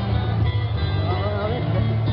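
Live acoustic band performance: acoustic guitars playing under a singing voice that carries a wavering melody through the middle, over a heavy, boomy low end.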